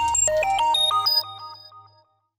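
Short electronic logo jingle: a quick run of bright, bell-like synth notes over a low sustained note, fading out in the last second.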